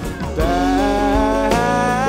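Live acoustic rock band playing, with acoustic guitar and drums; about half a second in, a male singer takes up a long held note over the band.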